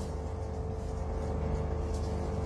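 Steady low background rumble with a faint, even hum on top, and no other event standing out.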